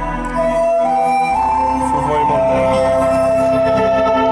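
Bass-boosted song played loud through a small 35-watt, 8-ohm woofer: a melody of held notes stepping between pitches over deep bass, the bass dropping out briefly about a second in.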